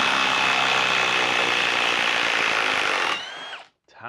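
Ryobi ONE+ HP half-inch cordless impact wrench hammering steadily as it backs a 6-inch by 1/2-inch lag screw out of a log. It stops about three seconds in and winds down briefly.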